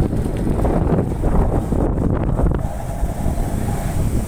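Wind buffeting the microphone of a moving motorcycle, a steady heavy rumble with the bike's running noise beneath it.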